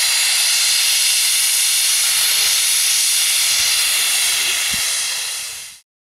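Loud, steady rushing hiss of gas escaping under pressure, high-pitched with almost no low rumble, fading a little and then cutting off abruptly near the end.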